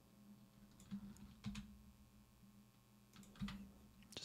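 Faint computer keyboard and mouse clicks, a few scattered taps, over a low steady hum.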